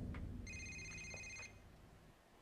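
Mobile phone ringing faintly in the show's soundtrack: one steady electronic ring about a second long, starting about half a second in.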